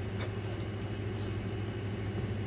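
A steady low background hum with a couple of faint light handling ticks as hands work the plastic top cuff and buckle of a child's roller skate.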